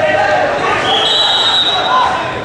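A referee's whistle starts about a second in and holds a shrill, steady tone for about a second, over shouting voices in the hall.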